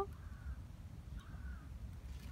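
Two faint, short bird calls about a second apart over a low steady rumble.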